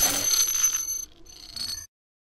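Glitchy electronic ringing with a steady high tone, stuttering and breaking up, then cutting off suddenly just before the end into dead silence.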